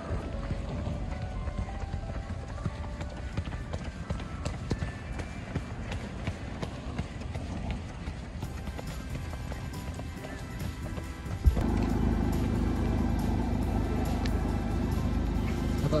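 A runner's footsteps on pavement while jogging, with music playing. About eleven and a half seconds in, the sound cuts abruptly to a louder, steady low rumbling noise.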